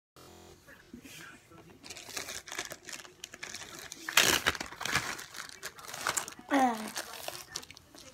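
Plastic bag holding slime crinkling and crackling as it is handled, loudest about four seconds in. Near the end a short falling vocal sound.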